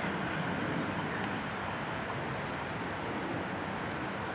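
Steady outdoor background rumble with no distinct events, only a few faint ticks.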